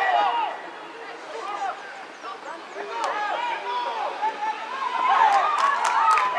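Several voices shouting and calling over one another on a football pitch, with no single clear speaker. The voices grow louder near the end, along with a few sharp knocks.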